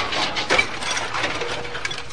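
Tail of a glass-breaking crash sound effect: a rapid clatter of small clinks and knocks as debris settles, slowly fading.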